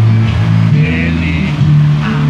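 A girl singing a gospel worship song into a microphone over a backing track with a heavy, steady bass line; her held, wavering note sounds about a second in.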